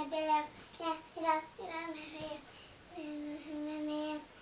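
A young girl singing on her own, with no backing music, holding long drawn-out notes with short sung syllables in between.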